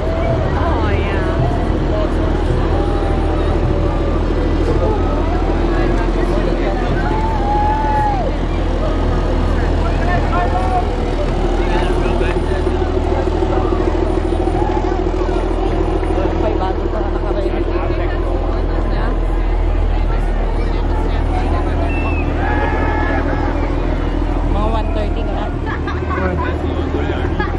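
Engines of an eight-wheeled armoured vehicle and military utility vehicles running as they drive past, a steady low drone, with scattered voices and calls from the spectators over it.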